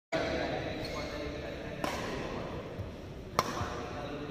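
Badminton racket strings striking a shuttlecock: two sharp hits about a second and a half apart, the second louder. Voices carry on in the background.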